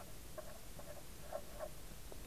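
Felt-tip marker squeaking faintly on paper in a series of short strokes as a word is handwritten.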